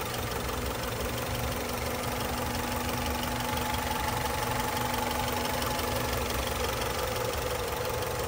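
Honda DOHC VTEC four-cylinder engine of a 1999 Accord SiR wagon idling steadily, heard close up with the hood open.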